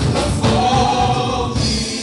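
Live gospel singing: a man sings lead into a microphone over a church PA, with backing voices and a band with drums. There is a long held note in the first half.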